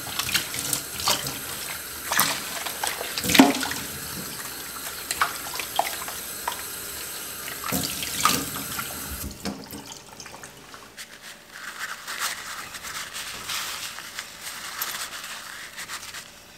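Tap water running and splashing into a stainless steel kitchen sink, washing away dumped yeast slurry, with many small splashes and knocks. About nine seconds in the sound drops to a softer, quieter wash.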